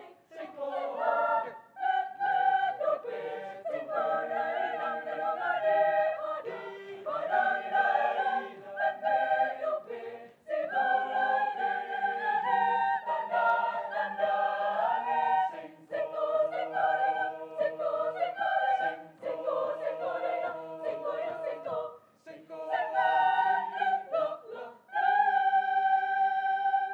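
Mixed choir singing a Batak folk song arrangement in phrases broken by short breaths, closing on a held chord near the end.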